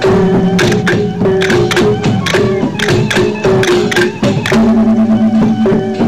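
Sasak gendang beleq ensemble playing: large double-headed barrel drums beaten in a busy, driving rhythm, with a small hand-held gong and other gongs sounding short repeated notes and a longer held lower tone in the second half.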